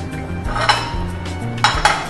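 Metal kitchenware clinking: one sharp clink about a third of the way in, then two quick clinks close together near the end, each with a brief metallic ring.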